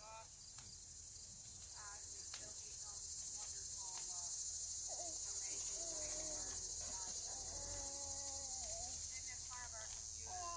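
Steady high-pitched buzzing chorus of late-summer insects such as crickets, carrying on without a break. A faint distant voice talks under it in the middle.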